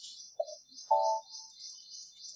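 Birds chirping in the background: a rapid, high twittering that runs on, with a short lower call near half a second and a louder one about a second in.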